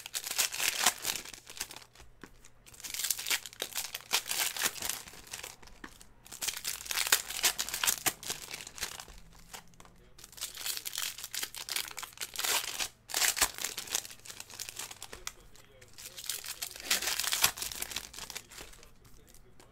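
Foil trading-card pack wrappers crinkling and tearing as packs are ripped open and handled, in repeated bursts of a second or two with short pauses between.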